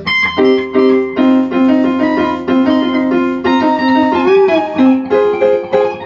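Electronic keyboard played with an electric-piano sound: a string of chords and held notes, a new one struck about every half second.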